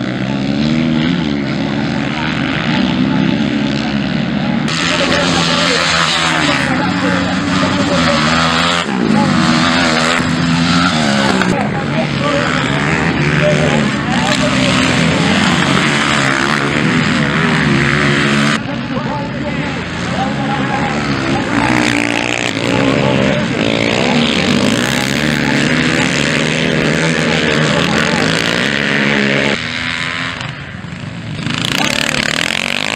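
Several dirt bike engines racing, their pitch rising and falling as riders accelerate and back off around the track. The sound changes abruptly twice, about five seconds in and at about eighteen seconds.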